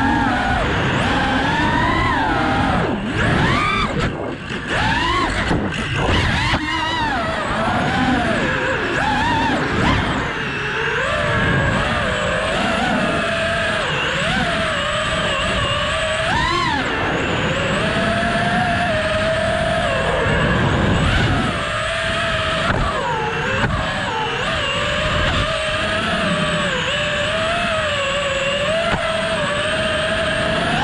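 FPV racing quadcopter's brushless motors and propellers whining, the pitch rising and falling continuously with throttle, with a sharp climb about halfway through.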